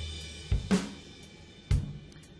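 FXpansion BFD2 sampled drum kit playing back a sparse drum part: a kick about half a second in with a snare hit just after, and another kick near the end, over a fading low ring and cymbal wash.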